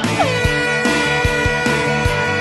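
Rock music with a steady beat, and over it a long air horn blast that drops in pitch as it starts and then holds one steady note: the signal starting a running race.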